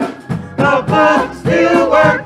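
Live gospel worship music: singers on microphones over drums and keyboard. Two loud, held sung phrases come in, about half a second in and again about a second and a half in, over a steady drum beat.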